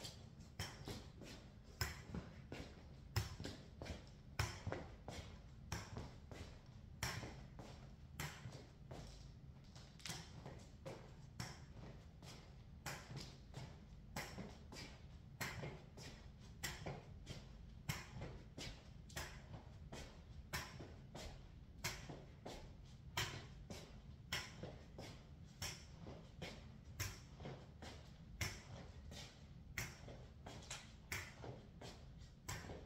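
Faint footsteps on a hard laminate floor: a long run of sharp taps, roughly two a second and slightly uneven, over a low steady hum.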